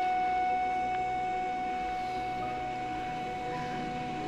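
Background music score: a single long held note, flute-like, that slowly gets quieter.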